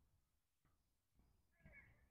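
Near silence: outdoor room tone with nothing distinct.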